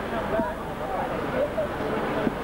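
Indistinct chatter of many voices in a large exhibition hall, with no single speaker clear.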